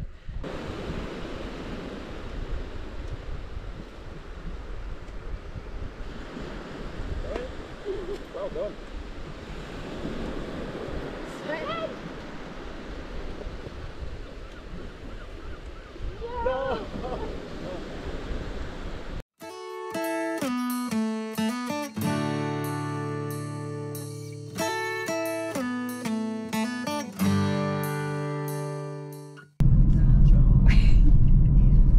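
Steady wind and surf with a few brief voice calls, then an abrupt cut about two-thirds of the way through to background music of plucked, decaying notes.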